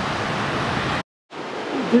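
Steady rush of surf from breaking ocean waves, cut off abruptly about a second in by a brief dead silence; a steady background hiss then returns, and a man starts talking at the very end.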